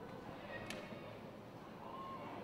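Faint football-stadium ambience with distant voices, and a single sharp click a little under a second in.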